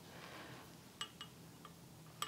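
Near silence: faint room tone, with three small faint clicks in the second half as the stuffed fabric toy is turned over in the hands.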